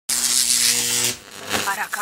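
Channel logo intro sting: a loud electronic buzzing hiss for about a second that cuts off, then voice-like rising and falling glides start in the last half second.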